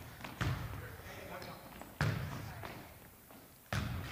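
A volleyball being hit and bouncing in a gym during a serve and pass: three sharp thuds, about half a second in, at two seconds and near the end, each with an echo in the hall.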